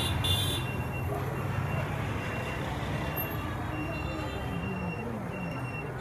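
Town street traffic: motorcycle engines and other small vehicles running and passing, with people's voices in the background. The engine sound is strongest at the start and slowly fades.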